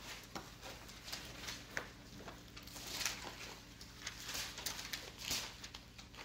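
Faint, scattered ticks and rustles over a low, steady hum.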